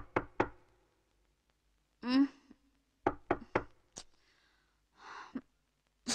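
Knocking in quick groups of sharp raps: four raps at the start, three more about three seconds in, and a single knock near the end. A short falling vocal sound comes about two seconds in, and a brief breathy sound just before the last knock.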